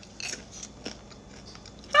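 Caramel-coated popcorn being crunched and chewed in the mouth: a run of short, irregular crunches.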